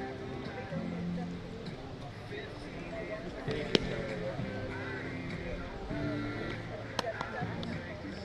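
Spectators talking along the fence line at a baseball game, with a single sharp crack of the pitched ball about three and a half seconds in and a lighter click near the end.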